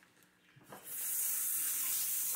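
Kitchen sink faucet turned on just under a second in, hot water then running steadily as a hiss.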